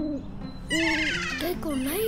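Ruru (morepork) hooting: the tail of one short hoot just at the start and a second a little under a second in, with high falling chirps over the second hoot.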